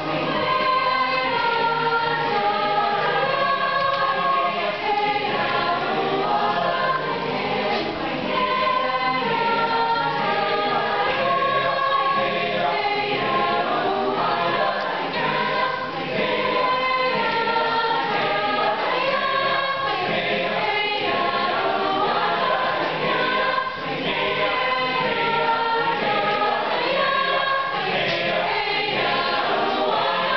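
Mixed high school choir singing a cappella in four parts (SATB), a lively, rhythmic piece sung without accompaniment.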